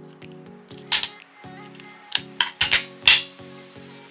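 Boiled blue crab claw shell being cracked in a hand-held cracker: a sharp crack about a second in, then a quick run of cracks and snaps near the three-second mark, over soft background music.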